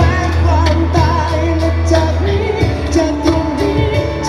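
Live band performance of a Thai pop song: a male singer singing into a microphone over acoustic guitar, a low bass line and a steady drum beat. The bass holds one low note, then moves to a new note about two and a half seconds in.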